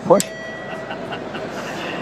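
A sharp click, then a faint steady electronic tone with a few higher tones from an iPhone lying on a table running a magic-trick app. It fades out near the end, over the steady murmur of a convention hall crowd.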